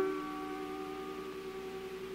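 Piano chord held and left ringing, slowly dying away, with no new notes struck.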